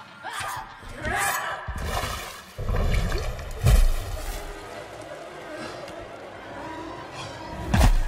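Film action sound effects: short vocal cries in the first two seconds, then a heavy crash with shattering and a loud hit a little over three seconds in, a low rumble, and another heavy thud near the end.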